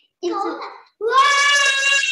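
A young girl's voice: a short sound, then one long vowel held on a steady pitch for about a second.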